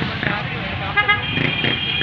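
A vehicle horn sounding in one long steady blast, starting a little past halfway, over a low rumble of road traffic.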